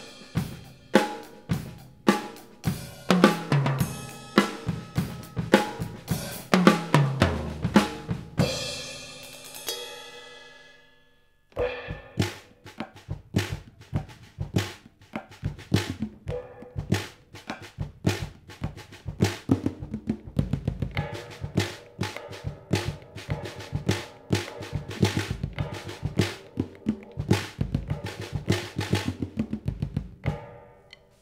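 Acoustic drum kit with Sabian SBR cymbals played unmuted: a groove broken by two tom fills stepping down from the high toms to the floor tom, with the cymbals ringing out and fading about ten seconds in. After a brief pause, the same kit is played with rubber QT silencer pads on the drums and cymbals: a steady groove of short, dull, damped hits with little ring.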